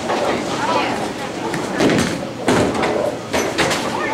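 Bowling alley din: a crowd of voices chattering, with several sharp knocks of bowling balls and pins from about two seconds in.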